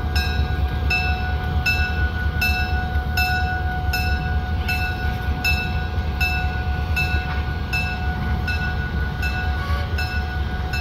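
Three ex-Southern Railway diesel locomotives, a GP30, an SD40 and a GP38-2, running as they move off down the track: a deep engine rumble with a steady whine over it. A bell rings about every three-quarters of a second.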